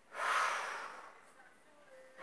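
A woman breathing out hard while holding a stretch: a single breathy rush that starts just after the opening and fades over about a second.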